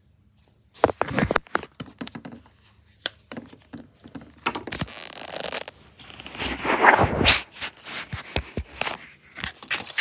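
Handling noise: toys and other objects being picked up, moved and scraped on a desk, with many sharp clicks and knocks starting about a second in and a louder stretch of scraping a little past the middle.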